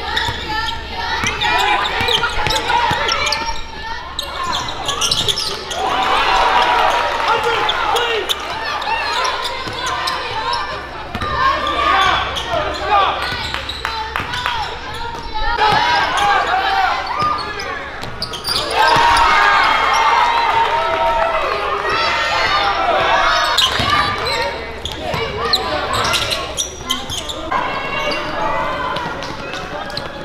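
Live sound of a basketball game in a gym: a basketball dribbling and bouncing on the hardwood floor amid players' and spectators' voices and shouts.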